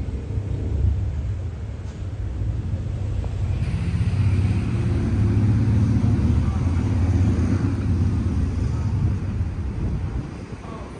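Low, steady engine rumble, as of a car idling, growing louder and fuller about four seconds in.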